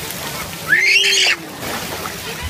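A child's short, high-pitched squeal about halfway through, over the steady rush of water running down a splash-pad slide.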